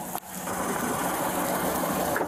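A car engine idling: a steady low hum under outdoor noise, picked up on a police body camera microphone, with a brief drop in level just after the start.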